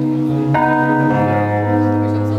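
Live instrumental music: sustained keyboard chords on a Nord Stage EX, with a new chord struck about half a second in and the low bass note changing about a second in.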